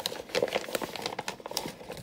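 Clear plastic meat-stick wrappers crinkling and crackling as they are handled, a quick irregular run of crackles.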